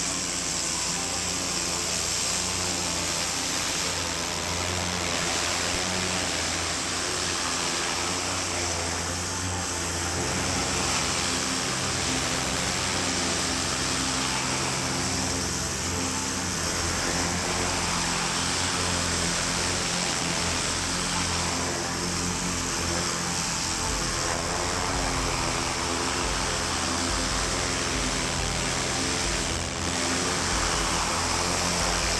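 Pressure washer lance spraying a high-pressure jet of water onto brickwork and paving: a steady, unbroken hiss of water.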